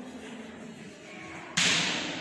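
A sudden loud hiss about one and a half seconds in, fading gradually, over a steady low hum.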